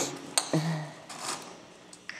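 A grocery item being put into a wire shopping cart: a sharp click and a short knock about half a second in, then faint rustling.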